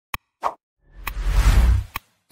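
Sound effects for an animated like-and-subscribe button: two quick click-pops, then a whoosh with a deep rumble lasting about a second, and another click at the end.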